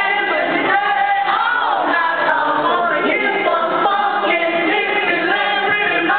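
Live band music with singing, many voices together, recorded from within the concert audience.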